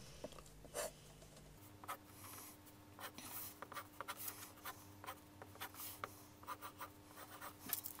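Pencil drawing on paper, faint: many short, irregular scratchy strokes as lines are sketched.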